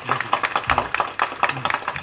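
A small group of people clapping, quick irregular overlapping claps.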